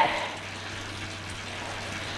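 Indoor bike trainer running under steady easy pedalling: an even whirring hiss with a faint low hum.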